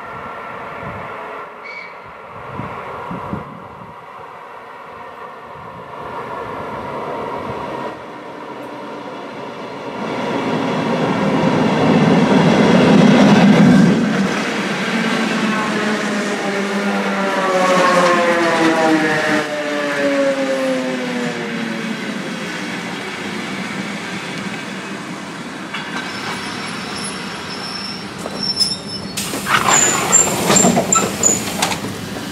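ER2T electric multiple unit pulling into a stop. Its running noise grows louder as it passes close by, then its traction motor and gear whine falls steadily in pitch as the train brakes, with wheel noise on the rails. There is a short clatter near the end.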